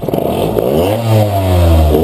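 Yamaha FS1 50cc two-stroke moped engine, tuned with a fast 50 cylinder, a 16 mm Mikuni carburettor and a 32 mm exhaust, revved with the bike standing still. The pitch climbs over about the first second, then is held high.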